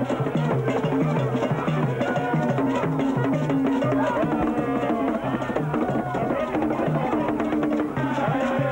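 Ghanaian drum ensemble playing a fast, repeating rhythm on hand drums, with voices singing over it.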